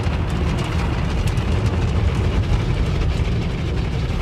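Tunnel car wash heard from inside the car's cabin: a steady rumble and wash of spinning cloth wraps scrubbing the foamed body while soap solution sprays over it.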